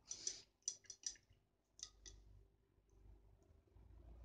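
Painting tools being handled: a short, faint scratchy swish, then four light clicks over the next two seconds.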